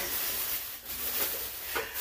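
Thin plastic bag rustling and crinkling as a chrome toaster is lifted out of it.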